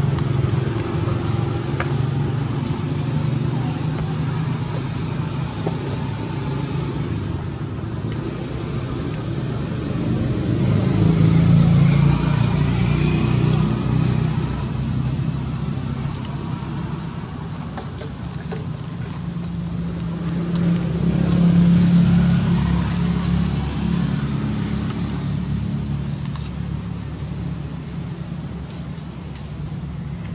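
Motor vehicle engine noise from passing road traffic: a low hum that swells and fades, loudest about 12 seconds in and again about 22 seconds in.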